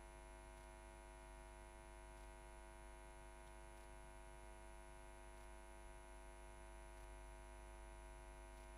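Near silence with a faint, steady electrical hum.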